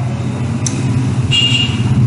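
A motor vehicle engine running steadily with a low hum, and a short high tone about a second and a half in.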